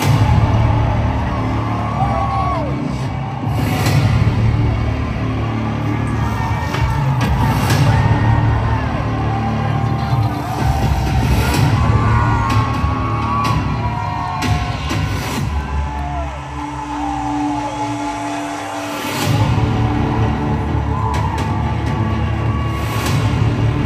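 Loud music with heavy bass starts suddenly over a concert sound system, with the crowd cheering and whooping over it. About three-quarters of the way through, the bass drops out for a few seconds and then comes back in.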